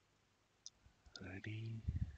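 A single short click about two-thirds of a second in. From about a second in, a man's voice starts speaking softly.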